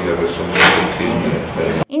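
A man speaking, with a short noisy scrape about a third of the way in. Near the end the sound cuts off abruptly and a different, clearer voice begins.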